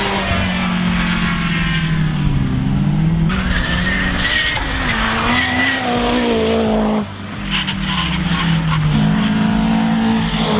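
Race cars lapping a circuit, engines revving up and down through a corner with brief tyre squeal. The sound changes abruptly about a third of the way in and again about two-thirds through.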